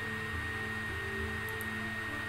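Steady background hum with a thin high whine above it, and a couple of faint ticks about one and a half seconds in.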